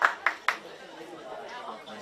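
Hands clapping about four times a second, stopping about half a second in, followed by faint, distant chatter of voices.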